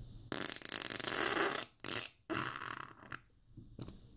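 A person farting through trousers right over the microphone: one long fart starting about a third of a second in, breaking into two or three bursts, the last trailing off about three seconds in.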